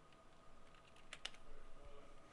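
Faint computer keyboard typing: a few keystrokes, the clearest two a little past a second in, entering a rectangle's dimensions.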